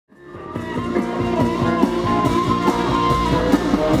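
Live band playing, led by plucked acoustic guitar in a steady rhythm, fading in over the first half second.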